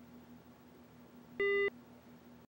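A single short electronic beep from a mobile phone as a call is hung up, over a faint steady hum.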